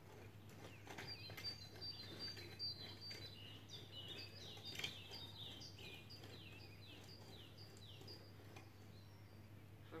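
Faint scraping and a few soft knocks of a garden hoe working through weedy soil, under a small bird's high chirps that slide downward and repeat over and over, with a steady low hum throughout.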